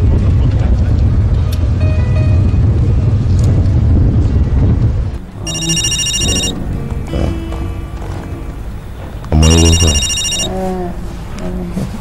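Bass-heavy music for about the first five seconds, then a telephone rings twice. Each ring is a bright, high tone about a second long, and the rings are some four seconds apart.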